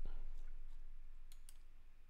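Computer mouse clicking: one sharp click at the start, then a couple of faint clicks about one and a half seconds in, as the photos are clicked through.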